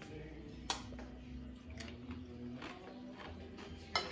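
A bite into a crisp tortilla chip, then a few faint crunches of chewing. A second sharp click comes just before the end.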